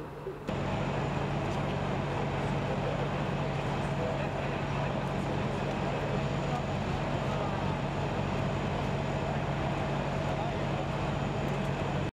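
Fire truck engine running steadily, a constant low hum, with faint voices in the background.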